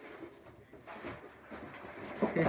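Faint rustling and light handling noises from a cardboard shipping box and its packing.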